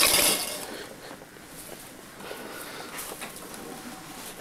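A sudden loud clatter of hard objects at the very start, fading within about a second into faint rustling and small knocks.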